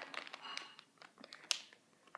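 Faint crinkling of a foil blind-bag packet being turned over in the hands, with a few small clicks and a sharper tick about one and a half seconds in.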